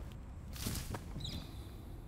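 Quiet outdoor ambience with a couple of faint, brief high chirps.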